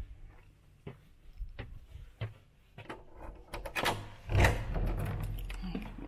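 Scattered footsteps and small knocks, then a flurry of clicks and a loud thump about four and a half seconds in as a door is opened.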